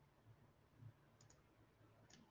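Near silence: a slide's audio clip playing back with nothing on it, recorded while the microphone was disconnected. A couple of faint clicks about a second in.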